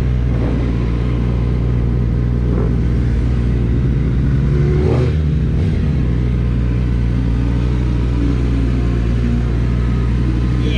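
Sport motorcycle engine running at low revs as the bike rolls slowly, steady throughout, with a brief rise and fall in revs about five seconds in.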